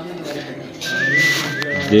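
A clear two-note whistle stepping up from a lower to a higher pitch, heard twice in quick succession, with a faint click between the two.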